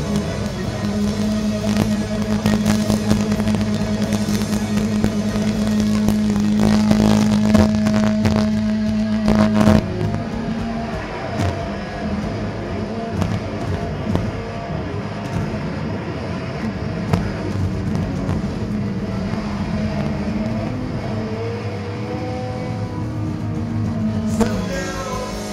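Loud distorted electric guitar in a live rock band, holding one long sustained note for about ten seconds that cuts off suddenly. A dense, noisy wash of guitar and band follows.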